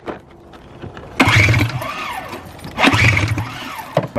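The recoil pull-starter of a 1999 Ski-Doo MXZ 600 two-stroke is pulled twice, about a second and a half apart, cranking the engine over without it firing. This is a compression test on a sled that gets no spark.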